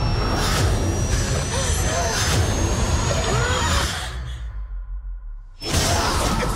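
Film trailer sound design: a dense rumbling mix with a thin rising whine and short gasping cries, which cuts out about four seconds in to a low rumble, followed by a sudden loud hit near the end.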